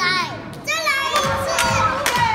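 Young children's voices singing and shouting, high and sliding in pitch, over music with a steady beat.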